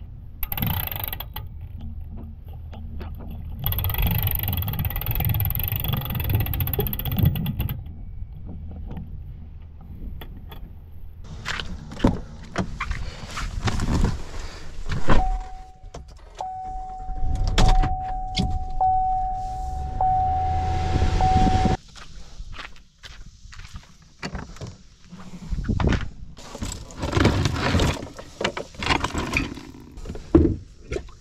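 Handling noises of hauling a boat out onto its trailer and pickup truck: clatter and knocks around the trailer winch and boat. In the middle, inside the pickup's cab, a low rumble and a steady electronic chime go on for about six seconds and cut off together.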